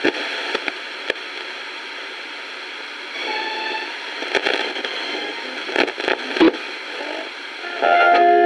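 Philips AQ 5160 radio cassette player's FM radio tuned between stations: a steady hiss of static with crackles and clicks as the dial is turned down the band. A station's music comes in just before the end.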